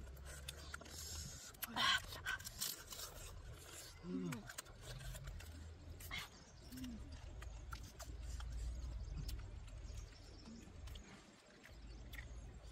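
People eating with their hands: chewing and lip-smacking clicks, with a couple of short voice sounds, over a low rumble.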